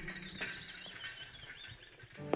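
Faint high-pitched trill, then wavering chirps, fading out near the end.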